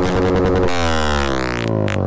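Electronic background music whose pitched layers sweep downward, with a rising whoosh shortly before the end.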